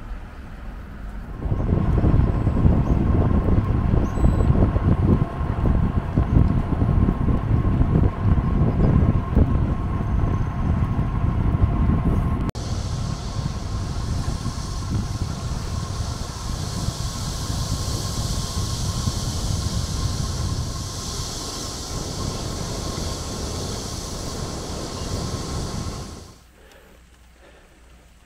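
Wind rushing over a moving bicycle-mounted camera's microphone while riding: a heavy, gusty low rumble, then after a sudden change about halfway through a steadier, higher rushing hiss.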